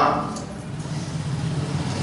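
A man's voice trails off in the first moment, then a pause filled by a steady low background hum.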